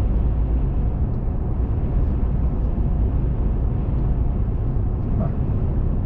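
Steady low road and engine rumble heard inside the cabin of a car cruising at highway speed.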